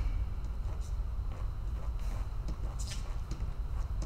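Steady low hum of a large hall, with a few faint, short scuffs of sneakers on the floor as a fencer shifts his feet into stance.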